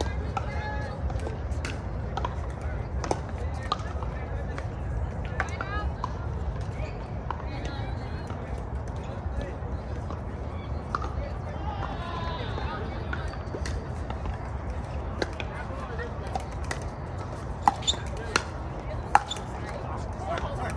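Pickleball paddles hitting a plastic ball: scattered sharp pops, then a quick rally of three loud pops near the end, about 0.7 s apart. Under them run a steady low rumble and distant voices.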